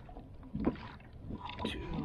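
A few sharp knocks and clicks, the loudest about two-thirds of a second in, from a hand working the kayak's Scotty Laketroller downrigger.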